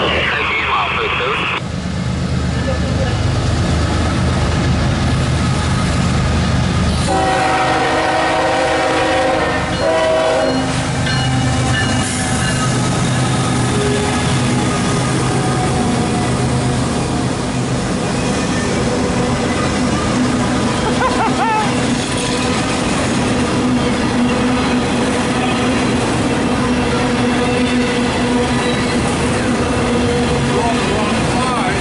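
CSX freight train approaching and passing, its diesel locomotives rumbling in and sounding one horn blast of about three and a half seconds, starting about seven seconds in. After that comes the steady rolling noise of loaded autorack cars going by.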